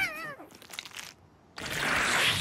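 Cartoon voice effect: a small creature's short, wavering, meow-like cry as it is caught in a spiky plant monster's mouth, followed after a brief silence by a loud noisy burst near the end.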